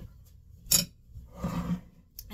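A metal spoon clinks sharply once against a glass mixing bowl about a second in, followed by a short scraping rustle as the bowl of banana bread batter is handled and slid aside on the counter.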